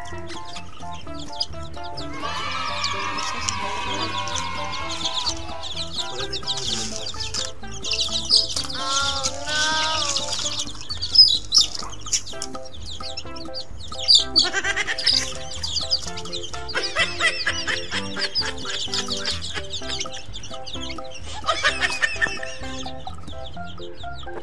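Background music runs throughout. Over it, chickens cluck and call in short, repeated bursts, busiest in the second half.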